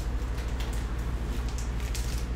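Steady low hum with a few faint rustles of foil trading-card packs, the last as a hand takes hold of the stack near the end.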